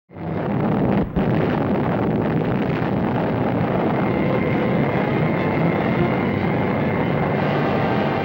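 Sustained loud roar of an atomic bomb blast on an old black-and-white newsreel soundtrack, starting abruptly, dipping briefly about a second in, then holding steady.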